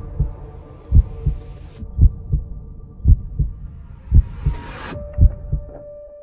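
Heartbeat sound effect: paired low thumps about once a second, lub-dub, over a steady low drone. A rising whoosh builds underneath and cuts off sharply about five seconds in.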